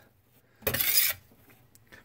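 A small metal sandbox shovel scraping once, a rasping scrape of about half a second a little after half a second in.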